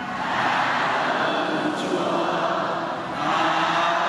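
Many voices of a large church congregation chanting together in unison, a dense blended sound with a slight dip about three seconds in.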